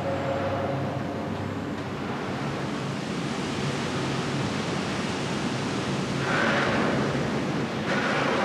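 Steady rushing noise of molten metal and slag pouring from a smelter furnace, over a low, steady industrial hum; the rush swells louder about six seconds in.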